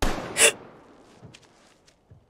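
A sudden loud impact, then a sharper, louder crack about half a second later, both fading out over the next second and a half with a few faint clicks: a violent struggle on a TV drama's soundtrack.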